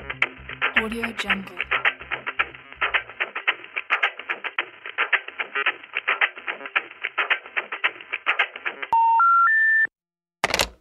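Busy rapid rhythmic sound, thin like a telephone line, with a bass beat for the first few seconds. About nine seconds in, three rising beeps of the telephone special information tone sound, the signal that a call cannot be completed as dialed.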